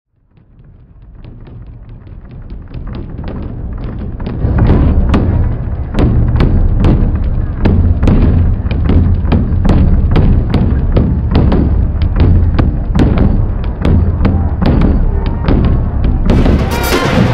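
Samba percussion band drumming: deep bass drums keep a steady beat under sharp drum strokes. It fades in from silence over the first few seconds, then plays on at full level.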